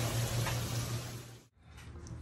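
Washing machine filling with water, a steady rush over a low hum, with detergent put into the water so that it dissolves. It cuts off abruptly about a second and a half in.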